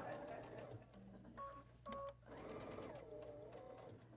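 Electric sewing machine stitching a seam through quilt fabric, running quietly with its speed varying. Two short beeps come about a second and a half in.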